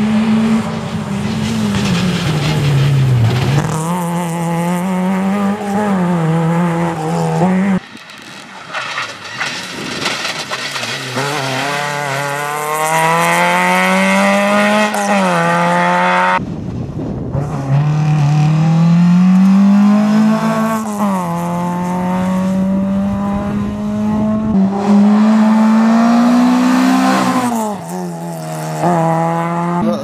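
Škoda Favorit rally car at full throttle, its engine revving up through the gears with a drop in pitch at each shift. It is heard on several separate passes, each cut off abruptly.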